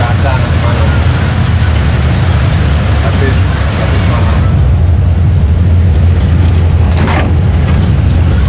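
Inside a Mercedes-Benz 1626 coach's cabin on the move: a steady low drone from the diesel engine and drivetrain under road and tyre noise on a wet road. The hiss thins out about halfway through, and there is a short burst of noise about seven seconds in.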